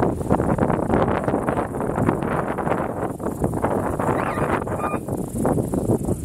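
Wind buffeting the microphone in uneven gusts, a loud rough rumble.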